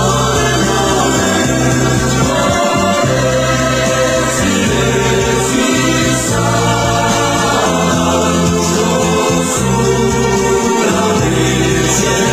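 Background music: a choir singing slow, held chords.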